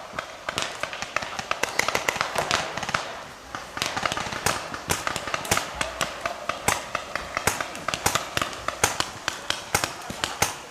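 Several paintball markers firing: sharp pops, several a second, coming irregularly at varying loudness, with a short lull about three and a half seconds in.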